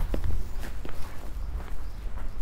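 Footsteps of a person walking, a series of short irregular steps over a low steady rumble.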